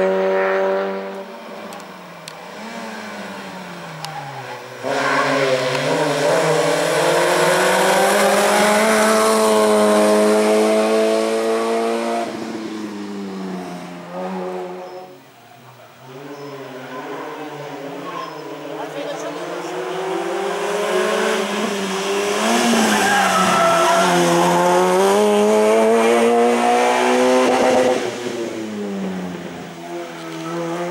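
Race car engine revving hard under full throttle, its pitch climbing and then dropping at each gear change over and over. There are two loud runs, with a brief quieter dip around the middle.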